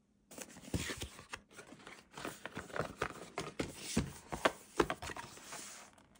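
Cardboard retail box being torn open by its pull tab and the lid unfolded: a scraping, tearing rustle of card with many small clicks and snaps, starting about a third of a second in and going on in fits.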